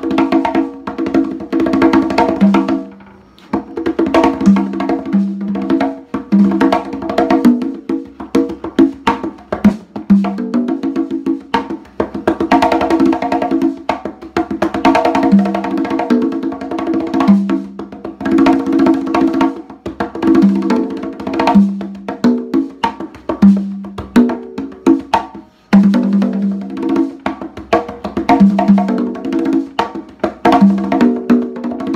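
Congas played by hand, LP Galaxy fiberglass and LP Giovanni Galaxy ash-wood tumbadoras, in a fast, continuous solo pattern of ringing pitched tones and sharp strokes. The playing drops away briefly about three seconds in and again near twenty-five seconds.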